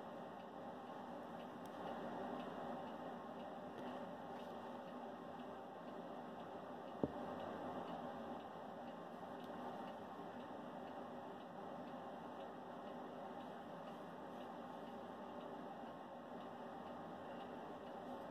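Quiet room tone: a faint steady hiss with no distinct source, broken by a single sharp click about seven seconds in.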